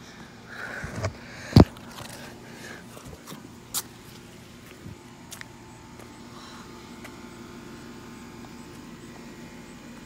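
A sharp knock about one and a half seconds in, then a few faint clicks and taps over a low steady background hum.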